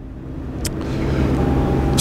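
A motor vehicle's engine running and growing steadily louder as it approaches, with a single short click about two-thirds of a second in.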